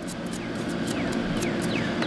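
A steady, low engine-like drone in the background, with faint high chirps that fall in pitch, about three a second.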